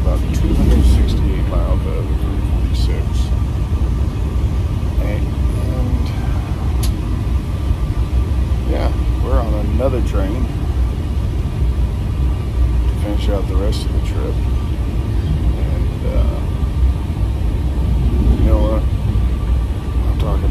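Steady low rumble of a moving train heard from inside, with faint voices now and then and a few light clicks.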